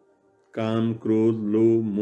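A man chanting a devotional verse in long, held sung notes, starting about half a second in after a brief silence.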